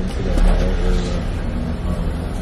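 A car's engine and road noise heard inside the cabin as a steady low rumble, swelling briefly about half a second in.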